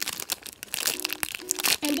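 Clear plastic bag crinkling and crackling as the squishy toy sealed inside it is turned and squeezed in the hands.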